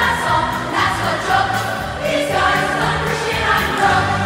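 A show choir singing together over an instrumental backing track.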